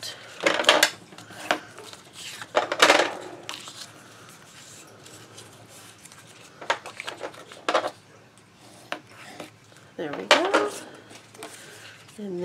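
Stiff black cardstock being handled, slid and folded against an album page: a handful of short rustles and scrapes of heavy paper, the loudest about half a second and three seconds in, with more near the end.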